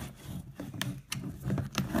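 Handling noise from food storage cans and their plastic lids being moved on a counter: several short clicks and knocks, mostly about a second in and again near the end, over a scraping rub.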